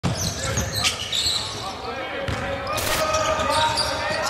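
Basketball court sounds: a ball bouncing with a few sharp hits, against the noise of voices in a large arena.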